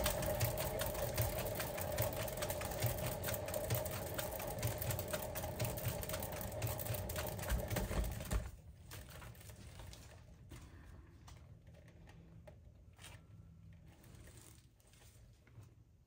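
A hand-spun paint-pouring turntable spinning fast, its bearing giving a rapid rattle with a steady tone for about eight seconds. It then turns much quieter, with faint ticking as it runs down to a stop.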